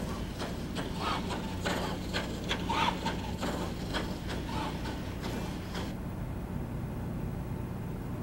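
Spring Flamingo bipedal robot walking on a plywood ramp: irregular knocks and taps of its metal feet striking the wood, over a steady low hum.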